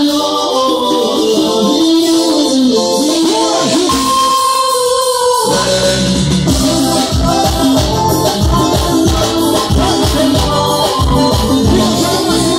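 Live band music: a sung melody over electronic keyboard, and about five and a half seconds in a steady bass and drum beat comes in under it.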